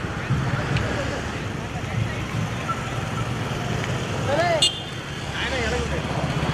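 Road traffic: motor scooter and motorcycle engines running past at low speed, a steady low rumble, with scattered voices and a short call about four and a half seconds in.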